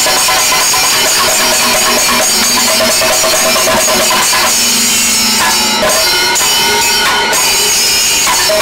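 Chenda melam: several chenda drums beaten with sticks in a fast, continuous roll, with ilathalam brass hand cymbals clashing and ringing over them.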